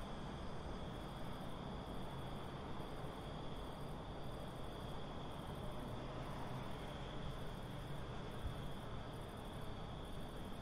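Faint steady background noise with a thin, high, continuous tone above it, and no music playing.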